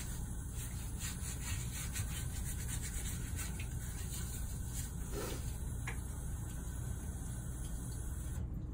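Fingernails being scrubbed with a nail brush at a sink: bristles rasping in quick repeated strokes.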